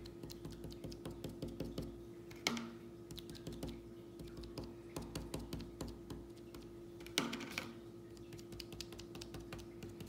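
A bundle of cotton swabs dabbed repeatedly onto paper laid on a wooden table: quick, irregular soft taps, with two louder knocks about two and a half and seven seconds in. A faint steady hum lies underneath.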